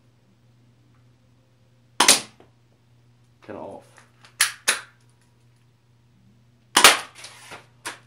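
Airsoft pistol fired twice, about five seconds apart, each shot a sharp snap. Between the shots the slide is racked with two quick clicks to cock the gun. A few lighter knocks follow the second shot as the target is knocked down.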